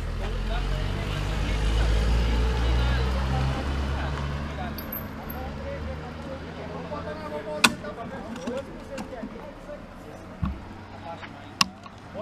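A car passing close by, its rumble swelling to a peak about two seconds in and then fading as it drives off up the road. Two sharp clicks follow later.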